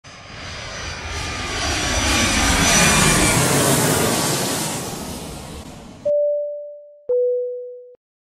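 Intro sound effect of a jet aircraft passing, a rushing noise with a faint whine that swells and fades over about six seconds. It is followed by a two-note chime, a high note and then a lower one a second later, each ringing out.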